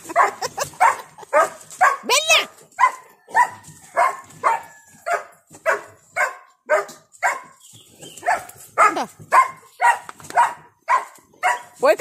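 A dog barking over and over, about two to three short barks a second, with one higher yelping cry about two seconds in.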